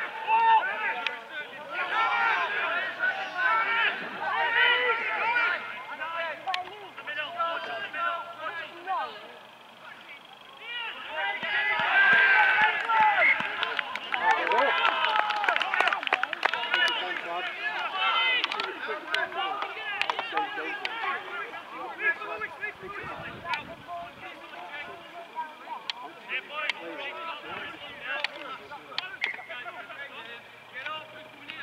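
Shouting and calling voices of rugby league players and touchline spectators during play, too distant or overlapping to make out words, with a louder spell of shouts from about eleven seconds in that lasts several seconds.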